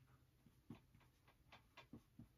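Faint taps and strokes of a dry-erase marker writing on a whiteboard: about four short ticks, most of them in the second half, over a faint low hum.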